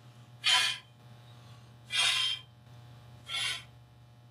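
Three short puffs of breath, about a second and a half apart, blowing the dust out of an opened set-top box.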